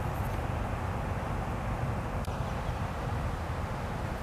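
Steady low background rumble of outdoor ambience with no distinct sound events, apart from one faint click a little past halfway.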